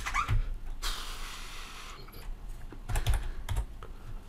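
Typing on a computer keyboard: a few short keystroke clicks at the start and another quick run of keystrokes about three seconds in, with a soft hiss between them.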